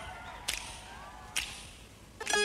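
Two sharp, whip-like cracks about a second apart, part of a slow, even beat of such cracks, each with a short ringing tail.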